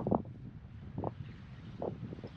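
Wind buffeting the microphone, a low rumble, with a few soft thumps about a second apart.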